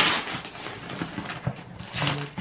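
Gift-wrapping paper being torn off a cardboard box and crumpled by hand: a rip at the start, then quieter rustling with a few light knocks against the box.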